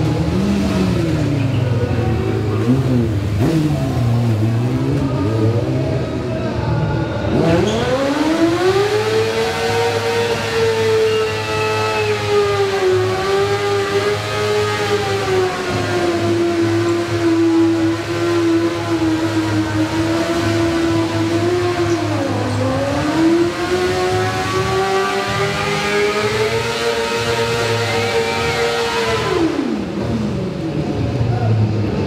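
Yamaha sport bike engine revving hard in a burnout, the rear tyre spinning in place. The revs rise and fall for the first several seconds, then climb and are held high for most of the rest, dipping briefly about three quarters of the way in and dropping off at the very end.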